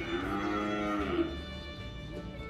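A cow mooing once, a single call of a little over a second, over background music.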